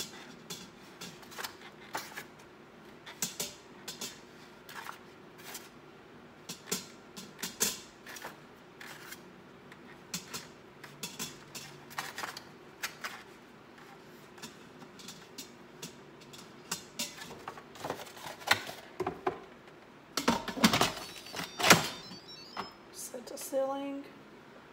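Eggs set one at a time onto the metal trivet inside a stainless steel Instant Pot pressure cooker, making a string of light, irregular clicks and taps. Near the end there is a louder clatter of knocks as the cooker's lid is fitted and turned closed.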